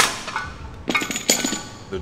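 Steel weight stack of a cable machine clanking as the weight is dropped for a drop set. A sharp metal clank at the start, then a quick cluster of ringing clinks about a second in.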